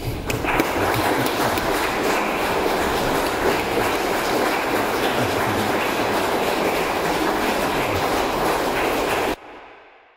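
Audience applauding steadily in a reverberant church, then cut off abruptly near the end, leaving a brief fading echo.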